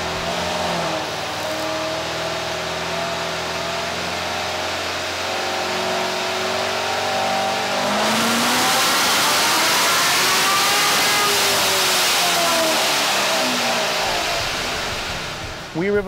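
Supercharged 6.2 L LT1 V8 of a 2018 Corvette Grand Sport, with an aggressive cam and long-tube headers, running on a chassis dyno. It holds a fairly steady speed for several seconds, then the revs climb and fall away again near the end.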